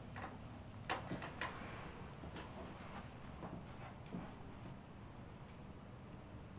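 Quiet handling sounds of a towel being draped over bare shoulders and hands beginning a shoulder massage, with a few small sharp clicks about a second in and fainter ticks after. A steady low hum runs underneath.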